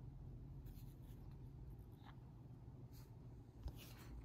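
Near silence: a faint steady low room hum with a few faint, brief scratchy sounds scattered through it.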